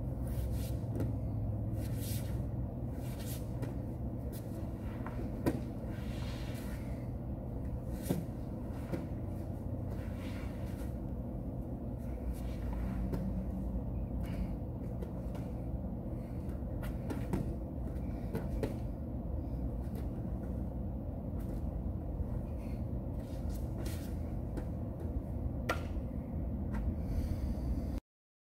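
A person moving on foam training mats: clothing rustling, with soft irregular thuds and knocks of hands, feet and body on the mat, over a steady low room rumble.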